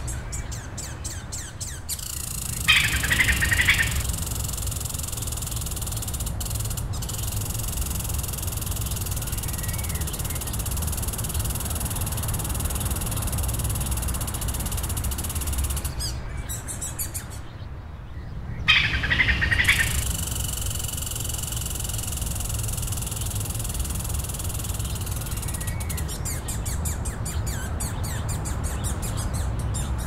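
Outdoor nature ambience with birds chirping over a steady background that has a low rumble and a high steady hiss. A short, louder burst of bird calls comes about three seconds in, and the same burst comes again about nineteen seconds in.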